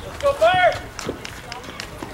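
A single high-pitched shouted call, about half a second long and rising then falling in pitch, from a voice at a youth baseball game, followed by a few faint light knocks.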